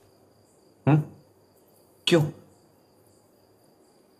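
Faint, steady, high-pitched insect trill, typical of crickets, running under two brief spoken words.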